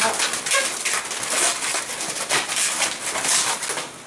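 Latex modelling balloons squeaking as they are twisted and rubbed by hand, in a run of short, irregular squeaks and rubs.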